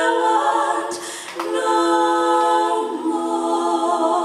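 Three women's voices singing a cappella in close harmony, holding long notes, with a brief break for breath about a second in.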